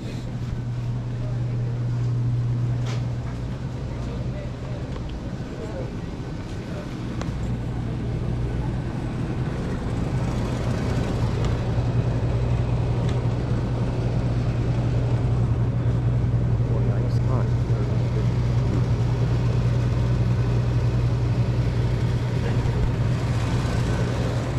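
Supermarket interior ambience: a steady low hum runs throughout, with indistinct shoppers' voices and a few faint clicks.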